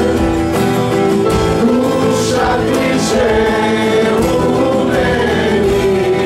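Live worship music: several voices singing together, holding long notes, over two strummed acoustic guitars and a keyboard.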